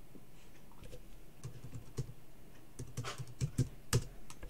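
Typing on a computer keyboard: a run of quick keystroke clicks, sparse at first and then faster, as a single word is typed.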